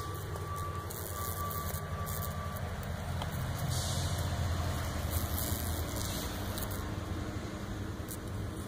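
A steady low hum and rumble, like a motor or engine running, with a faint high tone during the first couple of seconds and brief patches of hiss.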